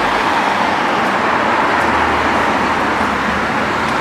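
Street traffic: the steady road noise of cars driving past.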